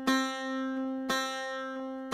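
Persian setar played slowly: single plucked notes at one pitch, about one a second, each left to ring and fade. These are the note Re (D), fretted with the first finger just before the second fret, in a beginner's exercise.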